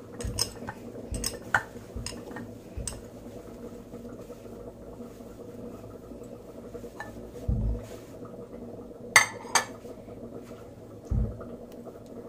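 Dishes being handled on a stone board: a bowl knocking lightly a few times as dough is kneaded in it, then dull thumps as dishes are set down, and two sharp clinks of dish against dish near the middle.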